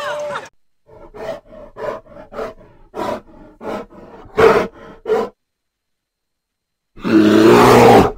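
Bear sound effect: a run of about eight short grunts, a pause of nearly two seconds, then one loud, long roar beginning about seven seconds in.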